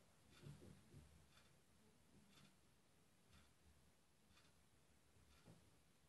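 Near silence, with a few faint soft clicks from handling in the first second and another near the end.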